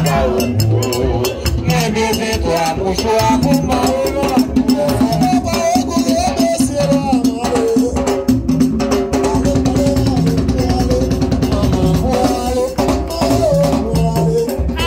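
Haitian Vodou dance music: drums beating a steady rhythm with a shaken rattle and singing voices over them.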